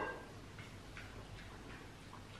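Faint, scattered ticks and clicks from small dogs eating off plates on a laminate floor, with one brief louder click at the start.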